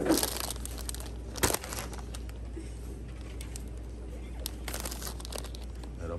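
Plastic snack-chip bags crinkling as they are handled, in a few short rustles, the sharpest about a second and a half in, over a low steady hum.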